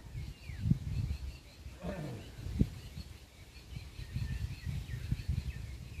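Small birds chirping repeatedly, faint and high, over an uneven low rumble, with a brief voice about two seconds in.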